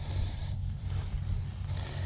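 Low, uneven rumble of wind on the microphone outdoors.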